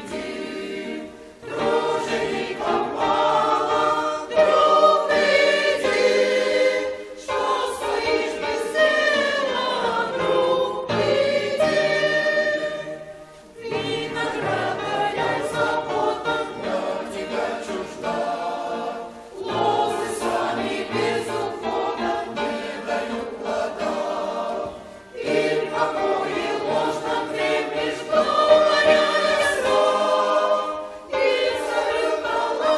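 Mixed church choir of men's and women's voices singing a hymn, in long sustained phrases with brief pauses between them.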